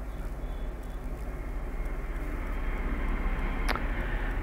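A motor vehicle's engine rumbling steadily and growing gradually louder, with a brief high-pitched sound near the end.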